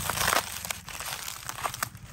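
Dry fallen leaf litter crunching and crackling in irregular bursts as it is disturbed, loudest in the first half-second.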